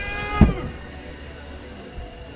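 A firework shell bursting with a single deep boom about half a second in. A short wavering, meow-like call overlaps it at the start.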